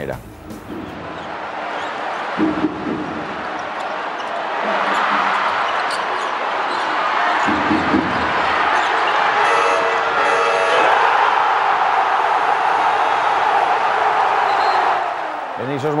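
Basketball arena crowd, a dense wall of voices that swells into loud cheering as the game clock runs out on a last-second basket, with a few ball bounces on the hardwood in the first half. A short horn-like tone about ten seconds in fits the end-of-game buzzer.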